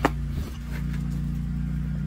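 A steady, low engine drone runs throughout, with a sharp click right at the start.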